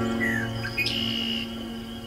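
A harp chord rings and slowly fades, with birds chirping and whistling over it.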